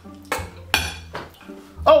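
Metal spoons clinking against ceramic plates while eating, two sharp clinks less than half a second apart, the second louder with a short bright ring.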